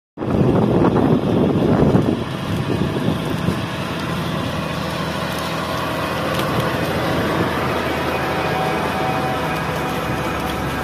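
John Deere 8RX 410 tracked tractor's diesel engine running under load as it pulls a slurry tanker and strip-till rig past at close range. It is loudest in the first two seconds, then settles into a steady drone.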